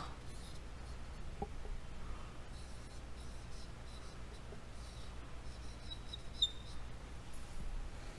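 Felt-tip marker writing on a whiteboard: faint, scratchy strokes with a brief thin squeak a little after six seconds in. Under it runs a low, steady hum.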